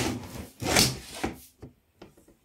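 A wooden drawer scraping in its runners as it is tugged back and forth: two rubbing strokes in the first second, the second the loudest, then a few lighter knocks.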